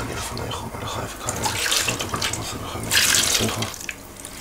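Water poured from a plastic jug over hands into a plastic basin, in several separate splashing pours, the loudest about three seconds in. It is ritual hand-washing, the water poured over each hand in turn.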